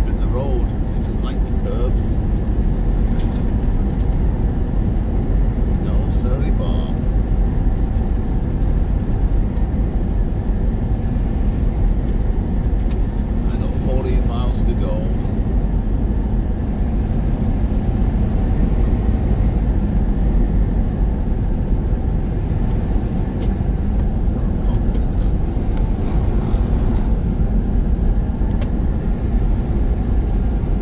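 Semi-truck cab interior while cruising on the highway: a steady low engine drone and road rumble.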